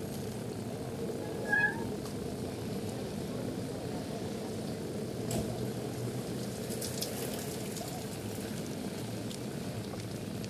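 Steady rumble of a bicycle rolling over wet pavement, picked up by a camera mounted on the handlebars, with one short high-pitched squeak about one and a half seconds in and a few faint clicks later.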